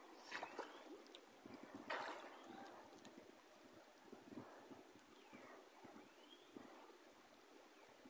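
River water stirring and splashing softly as a man wading neck-deep ducks under the surface, with a brief louder splash about two seconds in. Low outdoor ambience follows, with a few faint rising chirps near the end.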